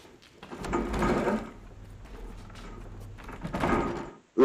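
The TV drama's soundtrack playing quietly. It has a steady low drone, with louder, noisy passages about a second in and again near the end.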